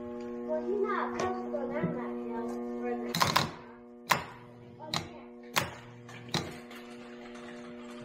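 New replacement starter motor for a Ford Ranger bench-tested off the truck on jumper cables, running free with a steady whine. A few sharp clicks and knocks come in the middle, the loudest about three seconds in. The new starter works.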